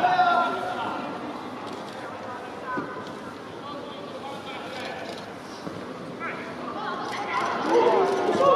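Shouted voices calling out during a football match, loudest at the very start and again rising near the end, with a steady background hum between.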